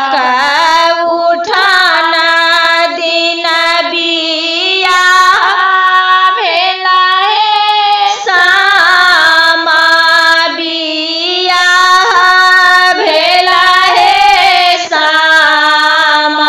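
A high female voice singing a Maithili Sama-Chakeva samdaun, a folk song of a daughter's farewell, with long held notes that waver and slide between phrases.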